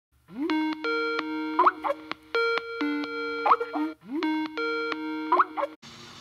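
Skype call ringtone: a short melodic phrase that swoops up into a few held notes, played three times about two seconds apart.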